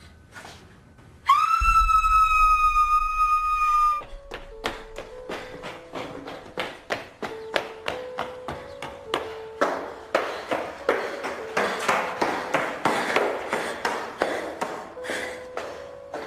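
A sudden loud, shrill whistle-like tone cuts in about a second in and holds steady for nearly three seconds, then stops abruptly. It gives way to a steady run of sharp clicks over a soft, slow two-note tone that alternates up and down, rising in a noisy swell before fading back. These are horror-film soundtrack effects.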